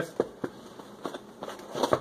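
Handling noise from a cardboard retail box with a clear plastic window being picked up and turned over in the hands: a few light, scattered taps and crinkles.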